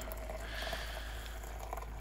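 Hot water poured in a steady stream into a glass French press onto coffee grounds, a continuous even splashing.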